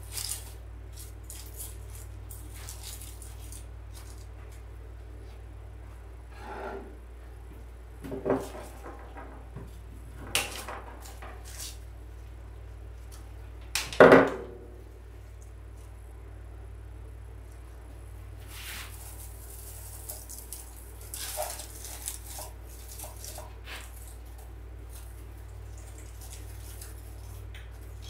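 Artificial pine and holly stems rustling and scraping as they are worked into a greenery candle ring by hand, with scattered small clicks and one louder sharp knock about halfway through, over a steady low hum.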